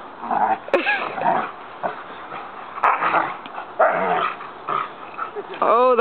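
Nine-month-old Rottweiler growling and giving short barks in play, in irregular bursts while roughhousing with a person.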